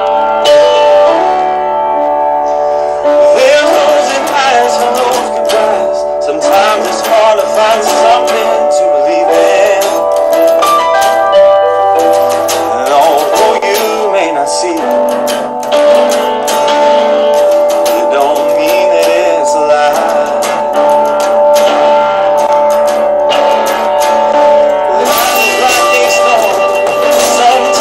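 A band playing an instrumental passage: nylon-string acoustic guitar with electric guitar, bass guitar and a drum kit. The drums and cymbals come in about three seconds in.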